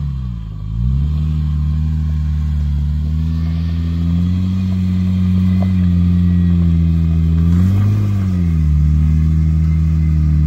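Jeep Wrangler Rubicon's engine pulling under load up a steep rocky climb, its revs dipping and recovering in the first second, then holding steady and swelling briefly about eight seconds in before settling.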